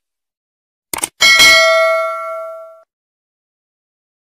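Subscribe-animation sound effect: a short mouse click about a second in, then a single notification-bell ding that rings out and fades over about a second and a half.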